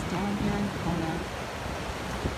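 Ocean surf washing onto the shore as a steady rushing wash, with a voice speaking briefly in the first second.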